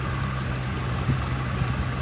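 Boat motor running at a steady, low hum as the boat travels slowly through the water, with a faint short knock about a second in.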